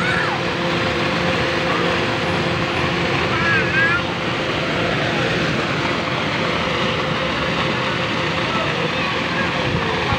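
A steady, loud rushing noise with a constant low hum running under it. Brief high squeals of a child's voice come at the start and again about three and a half seconds in.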